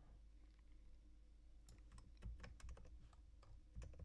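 Faint, scattered computer keyboard keystrokes, a handful of short clicks from about halfway through, over a low steady background hum.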